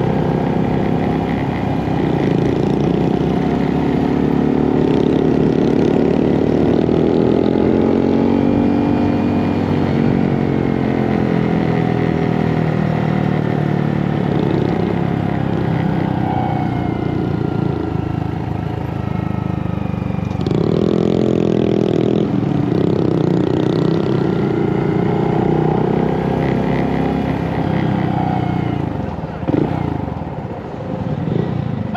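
Motorcycle engine running on the move, its pitch rising and falling with the throttle. It gives a brief sharp rev about two-thirds of the way through and eases off near the end.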